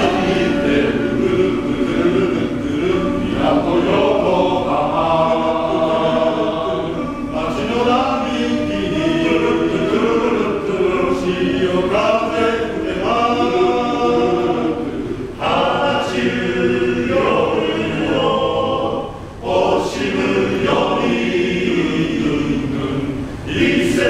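Male-voice choir of about a dozen singers singing in parts, with brief breaks between phrases about fifteen and nineteen seconds in.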